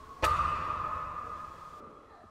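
A single bright ping, a post-production sound effect: a sharp strike about a quarter second in, then one ringing tone that fades away over about a second and a half.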